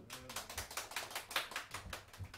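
A small audience applauding: many quick, scattered hand claps that die away at the end.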